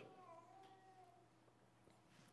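Near silence: quiet room tone in a pause between spoken sentences, with a faint wavering high tone during the first second or so.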